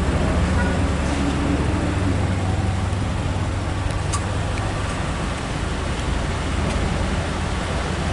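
Car engines idling in a queue of traffic: a steady low rumble.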